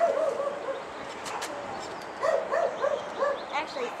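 Dog barking in quick runs of short, high yips: one run at the start and another from about two seconds in.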